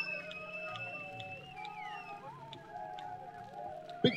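Quiet sustained tones ringing from the stage's amplification, slowly gliding up and down over a steady low hum, with faint scattered ticks.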